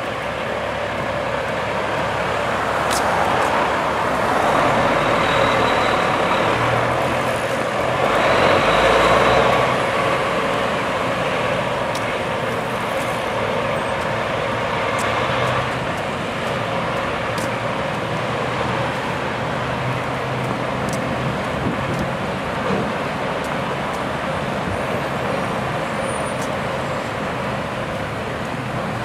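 Street traffic going by on a city street, a steady rush of engines and tyres that swells as vehicles pass, loudest about eight to ten seconds in.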